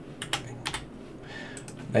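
About five short, sharp clicks from a computer keyboard and mouse being used at a desk, coming in two quick pairs and one single click.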